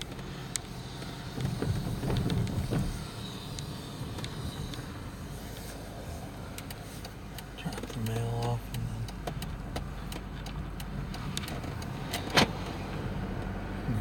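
Car driving, heard from inside the cabin: a steady low engine and road hum, louder for a moment about two seconds in, with a single sharp click about twelve seconds in.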